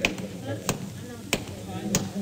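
Radio-drama sound effect of footsteps at a steady walking pace, a sharp step about every two-thirds of a second, over a faint murmur of voices in a tavern.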